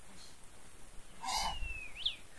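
A bird's single thin whistled call, sliding slowly down in pitch and then sweeping sharply up at the end, starting about a second in alongside a brief noisy rustle.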